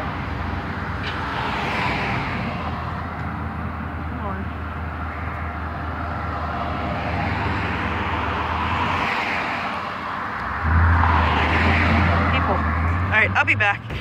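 Street traffic: cars driving past with engine and tyre noise swelling and fading several times, and a louder low rumble from a little before eleven seconds in.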